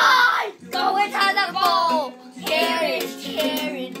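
A children's song with a child singing, over strumming on a small toy ukulele.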